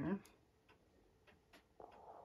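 A few faint, irregular ticks and a soft rustle of tissue paper as a small paintbrush is wiped clean.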